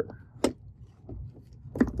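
A single light click about half a second in, from a small object handled on the workbench, against faint room sound.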